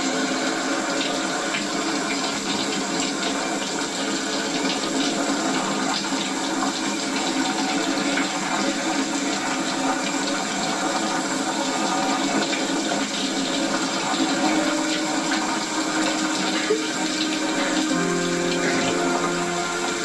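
Shower water spraying steadily, heard through a television's speaker, with soft sustained music chords underneath that grow louder near the end.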